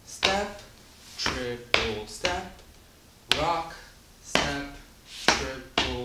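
A man's voice calling the Lindy Hop basic-step count, 'rock, step, triple step, rock, step, triple', in an even rhythm, with light taps of shoe soles on a tile floor marking the steps. It cuts off abruptly mid-count.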